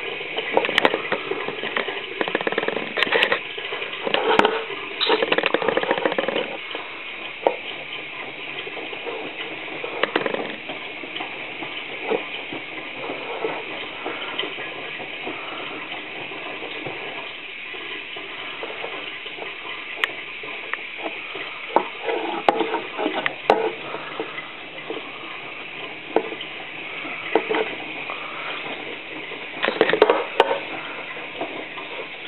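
Miele WT2670 washer-dryer's drum tumbling a wet towel load during the wash, the water sloshing and splashing irregularly. It is louder for the first few seconds and again later on, quieter in between.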